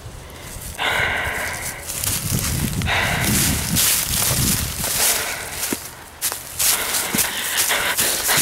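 Footsteps crunching and rustling through deep dry leaf litter, with two louder stretches of about a second each, near the start and around three seconds in.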